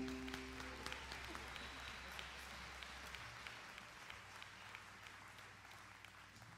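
Audience applause, fading gradually, after the last held chord of bowed strings dies away about a second in.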